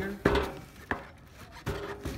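Cardboard shoeboxes being handled: a few knocks and scrapes, the loudest just after the start, a sharp click near the middle and another knock near the end.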